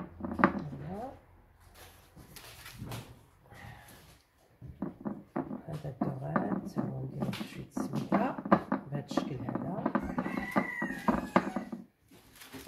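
Voices talking indistinctly, starting briefly near the beginning and then carrying on almost without pause through the second half.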